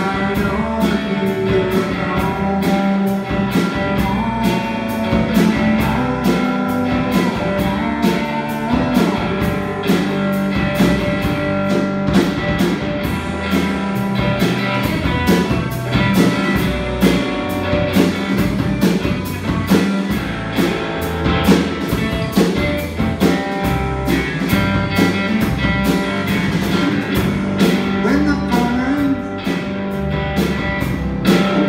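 A small band playing a song live: electric and acoustic guitars over a steady drum-kit beat, with singing.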